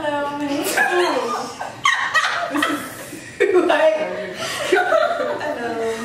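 A group of young women laughing and chattering over one another, several voices at once.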